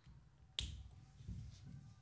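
A single sharp plastic click about half a second in: a whiteboard marker's cap snapping shut.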